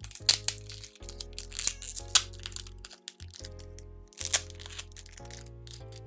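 A foil blind-bag packet crinkling and tearing as it is opened by hand, in irregular sharp crackles, the loudest about two seconds in and just after four seconds. Steady background music plays underneath.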